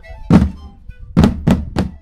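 Percussion-led music: a loud drum hit about a third of a second in, then three quick hits in the second half, before the music stops abruptly.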